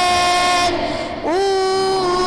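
A boy singing solo into a microphone, holding long notes. Just past halfway he breaks off briefly, then slides up into the next held note.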